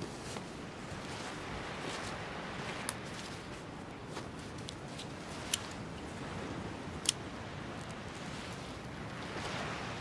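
Steady background noise with a few brief, sharp clicks, about three, spread through it.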